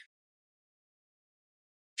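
Silence: a complete, dead-quiet gap with no sound at all.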